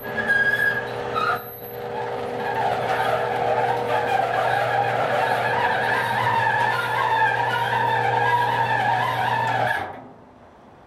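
Old sectional garage door rolling up with steady squealing and creaking of metal on metal, over a steady low hum. It stops suddenly just before the end.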